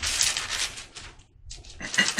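Thin Bible pages rustling as they are leafed through by hand, in two spells: one in the first half and another starting near the end.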